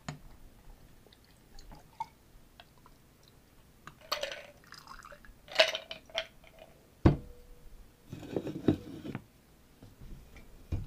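A stirred cocktail strained from a mixing glass over ice into a highball glass: liquid trickling and dripping onto ice, with light clinks of glass and ice. There is one sharp knock about seven seconds in, as glassware or a can is set down on the bar.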